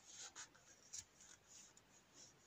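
Faint rustling of thick yarn against a wooden crochet hook as a stitch is worked, with a few light ticks, the clearest about a second in.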